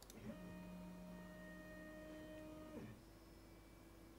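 Stepper motors of a NEJE 3 Pro laser engraver whining faintly as the gantry moves the laser head to frame the job. The whine holds one steady pitch for about two and a half seconds and stops, leaving a fainter steady hum.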